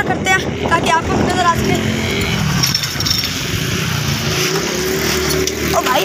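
Steady rumble of street traffic and moving air heard from a bicycle ridden through town, with a boy's voice talking briefly over it in the first second or so.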